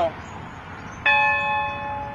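A large cast bell struck once about a second in, then ringing on with several steady tones that slowly fade.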